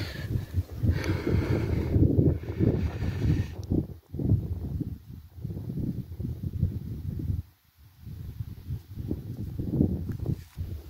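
Wind buffeting the microphone in uneven gusts, with a short lull a little past the middle.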